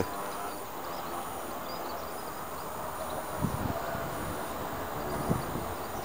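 Steady outdoor background rumble with no clear single source, with a couple of short low thumps past the middle and a few faint high chirps.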